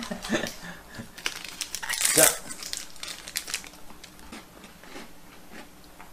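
Plastic packaging inside a box of Vinch chocolate biscuits crinkling and crackling as a biscuit is taken out, in a quick run of irregular small crackles and clicks.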